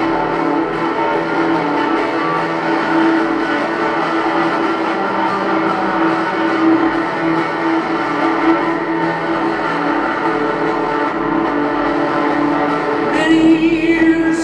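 Live amplified guitar music from a concert stage, heard across an arena: a stretch of sustained, ringing guitar notes without lyrics. A voice-like sound comes in near the end.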